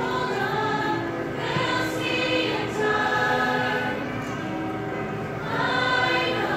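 A mixed high-school show choir singing in harmony, holding long notes.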